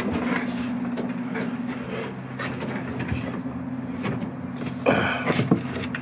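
A steady low mechanical hum, with a few faint scrapes and knocks and a brief louder noise about five seconds in.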